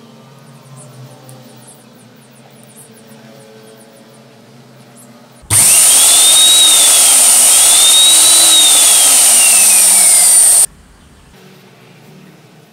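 Electric motor of a restored Mitachi MDC-150F drilling machine switched on for a test run about five and a half seconds in. It runs loud for about five seconds with a high whine, its pitch rising and falling twice and then sliding down, and cuts off suddenly.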